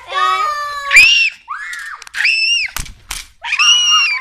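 Young girls screaming with excitement as they coast down a slope on bicycles: a long drawn-out shout of "go", then three high-pitched screams about a second apart.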